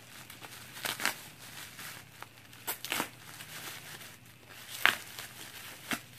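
A mailing package being cut and torn open with a pocket knife, its plastic wrapping crinkling in about half a dozen short scratchy bursts.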